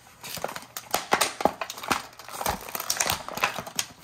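Clear plastic packaging crinkling as it is handled and worked out of a cardboard box, in quick irregular crackles.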